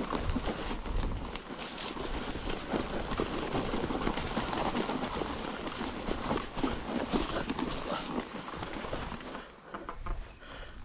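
Mountain bike ridden over a wet, muddy moorland track through long grass: tyre noise in mud and grass with dense, irregular rattling and knocking from the bike, dropping off briefly near the end.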